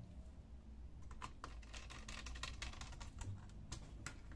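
A quick, irregular run of light clicks and taps from hands working with a small precision screwdriver on an opened laptop's plastic chassis. It starts about a second in.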